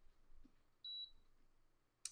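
Electric waffle maker giving one short, high electronic beep about a second in, against near silence.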